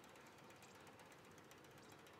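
Bicycle freewheel ticking rapidly and evenly as the wheel of the fallen bike spins freely, its hub pawls clicking.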